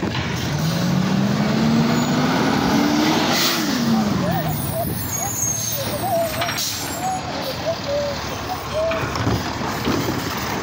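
Diesel engine of an automated side-loader garbage truck revving up over about three seconds and dropping back down, with a short hiss of air around the peak, as the truck draws up to a cart.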